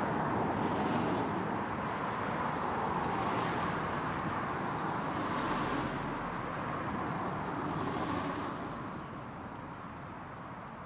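Road traffic noise: a steady rush of passing vehicles, swelling and easing, that dies away near the end.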